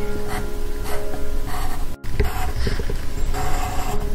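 Pencil lead scratching on paper in short strokes as characters are written, over background music with steady held notes. The sound drops out briefly about halfway through.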